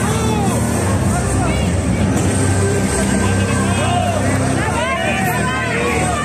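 Many overlapping voices shouting and calling at once over loud background music, with the shouting busiest near the end.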